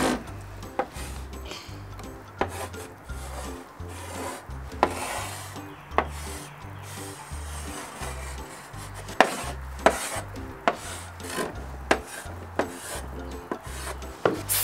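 Chalk writing letters on a blackboard: scratchy strokes with sharp taps each time the chalk meets the board. Quiet background music with a steady low beat runs underneath.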